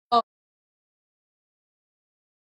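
A split-second sound with a voice-like stack of pitches, chopped off abruptly at an edit, followed by dead digital silence.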